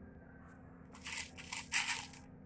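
Handling noise from crystal-bead work on nylon thread: three short rustling, scraping bursts in the second half, the last the loudest.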